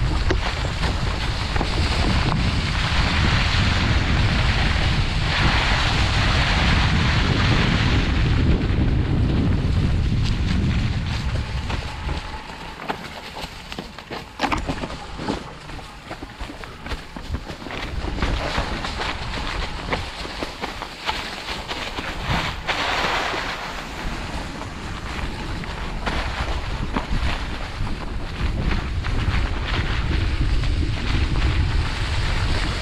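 Wind rushing over the microphone of a mountain bike ride down a forest trail, mixed with tyres rolling over dry leaves and dirt and the bike rattling. The rush eases for several seconds in the middle, where a few sharp knocks stand out, then builds again near the end.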